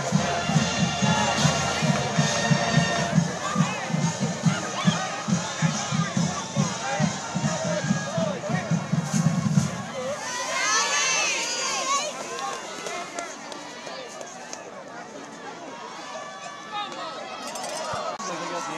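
A drum beats a steady pulse, about three beats a second, over the noise of a stadium crowd. The drum stops about ten seconds in, high voices cheer and shout for a couple of seconds, and then the crowd settles to a murmur.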